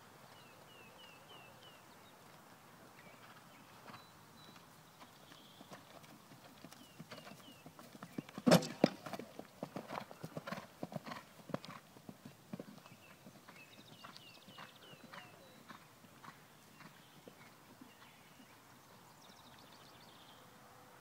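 Hoofbeats of a Thoroughbred horse cantering on grass. They grow louder as the horse comes close, are loudest about eight and a half seconds in, then fade again after a few seconds.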